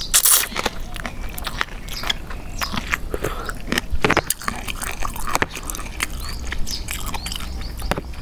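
Close-miked mouth sounds of eating a spicy chicken-feet salad with instant noodles: a short noodle slurp at the start, then steady chewing full of small wet clicks and crunches.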